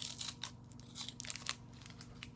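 Paper baking liner crinkling and tearing as it is peeled off a pastry by hand, in two short spells, near the start and about a second in.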